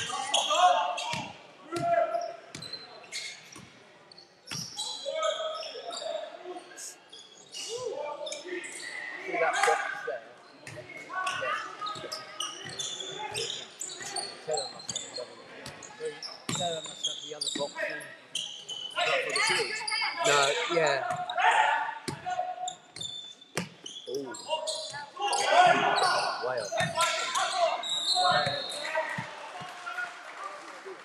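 Basketball being dribbled and bouncing on a hardwood court during live play, in short irregular runs of thuds. Players' shouted calls mix in, and everything echoes around the large sports hall.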